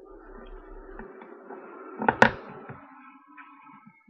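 A plastic action figure being handled close to the microphone: a continuous rustle, with two sharp plastic clicks a fraction of a second apart about two seconds in.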